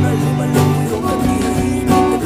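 Acoustic guitar strummed, several strokes sounding over ringing chords.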